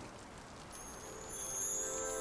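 Soft, even rain-like hiss from a cartoon soundtrack. About a second in, high shimmering tones fade in and a sustained musical chord swells: the magical cue for a rainbow appearing when rain and sun meet.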